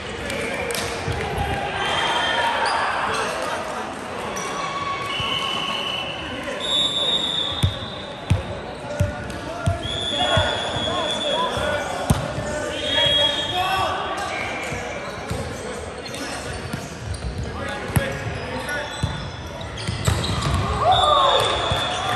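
Indoor volleyball on a hardwood court: sneakers squeaking on the floor, the ball thudding as it is bounced and hit, and players' voices calling out, all echoing in a large hall. The thuds come in a cluster about a third of the way in and once more later.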